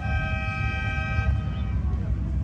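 A boat's horn from out in the bay sounds one long, steady note that fades out a little past the first second. A low rumble of wind on the microphone runs underneath.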